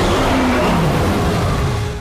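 Loud action-film trailer sound effect: a dense rush of noise with a low tone sliding downward through it, easing off near the end.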